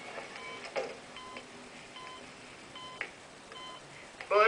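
Hospital patient monitor beeping steadily, a short two-pitch beep repeating a little more than once a second.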